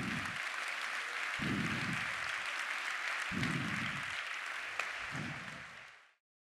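Audience applauding, over a low note that repeats about every two seconds; the sound fades out near the end.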